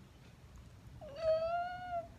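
A woman's voice making one drawn-out, high whine about a second long, starting about a second in and rising slightly in pitch, after a quiet moment of room noise.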